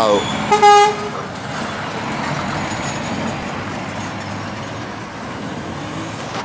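A single short horn toot, one steady pitched note about half a second long. Then a Scania truck with a curtainsider trailer drives past with steady engine and tyre noise that slowly eases as it moves away.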